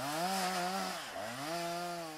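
Two-stroke chainsaw running at high revs. Its pitch sags briefly about a second in, then comes back up and holds steady.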